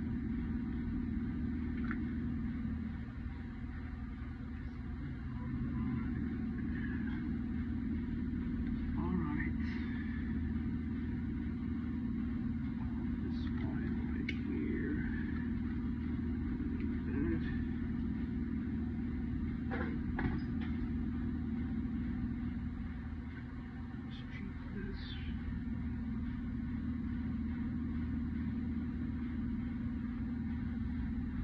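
Steady low hum of running mechanical-room equipment, with scattered faint clicks and rustles from handling wires and tools.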